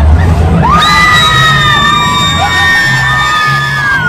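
Several riders screaming together in long, steady held screams, starting about a second in, over loud ride music with a steady bass line.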